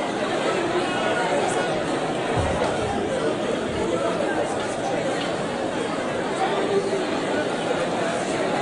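Several people talking at once in a room, an indistinct, steady babble of overlapping voices.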